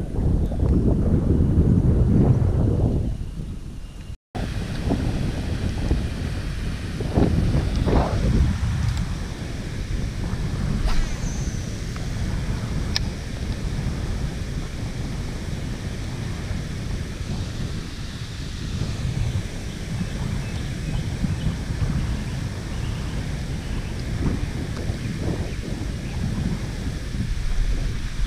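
Wind buffeting an open-air camera microphone: a steady low rumbling noise, with a sudden brief drop-out about four seconds in.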